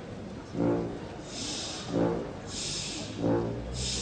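A wind orchestra plays the opening of a train piece: short, loud, horn-like brass chords about every second and a half, with bursts of high hiss between them, like a steam train puffing.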